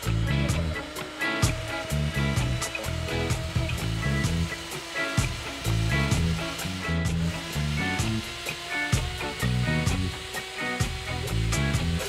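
Small electric food chopper's motor running, whirring as it chops onion, pepper and tomato in its bowl, under background music with a rhythmic bass line.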